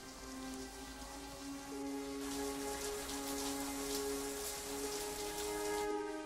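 Falling water splashing into cupped hands, pattering more thickly from about two seconds in, over soft film score with long held notes.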